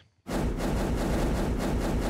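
Logo-animation sound effect: a dense rushing whoosh with a deep low end, starting about a quarter second in and holding at a steady level.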